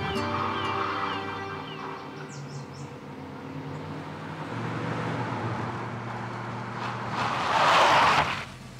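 Soundtrack music fading out as a 1970s Chevrolet Camaro's engine approaches. The car's engine and tyre noise grow to a loud rush near the end as it pulls up and stops.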